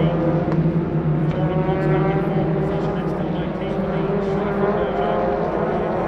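Touring-car racing engines running on the circuit, heard as a steady pitched engine note that wavers slightly.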